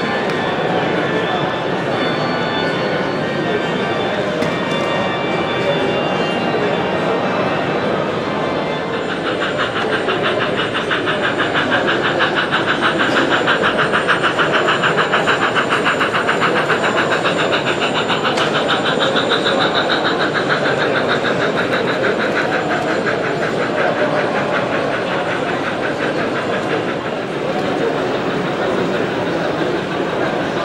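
Large-scale model train, a tank locomotive hauling loaded coal wagons, running past on the layout's track. A fast, even rhythmic clatter comes in about nine seconds in, is loudest around the middle, and fades away again, over a steady background of hall chatter.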